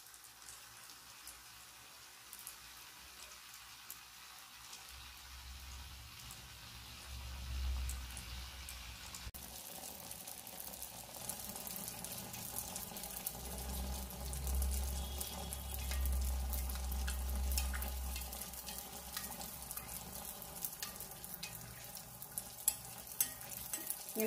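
Neyyappam batter deep-frying in hot oil in a metal kadai: a steady fine sizzle and crackle of bubbling oil, livelier from about nine seconds in, with a low rumble underneath at times.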